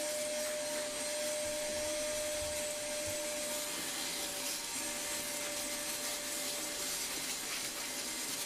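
Shop vacuum running steadily with a constant whine, its hose nozzle sucking sanding dust off a carved wooden plaque.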